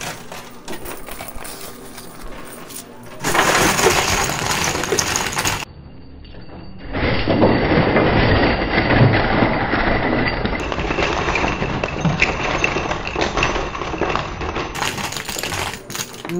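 Coin pusher machine's towers of casino chips, quarters and acrylic blocks collapsing: a lighter rattle of coins at first, then a dense loud clatter of chips and coins pouring over the edge from about three seconds in. The clatter dips briefly near the middle, then runs on loud for most of the rest.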